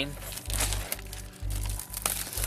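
Plastic shrink wrap on a cardboard collection box crinkling as the box is turned over and handled, over background music with a steady bass beat.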